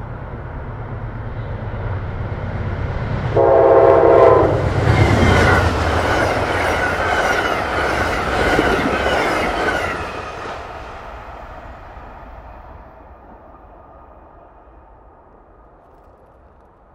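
Amtrak passenger train led by a GE P42DC diesel locomotive approaching and passing at speed. The rumble builds, the horn sounds one short chord about three and a half seconds in, then loud wheel and coach noise follows as the cars go by, fading away over the last few seconds.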